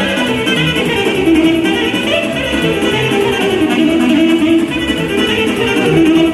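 Live Romanian sârba dance music: a saxophone playing a quick melodic line over electronic keyboard accompaniment with a steady dance beat.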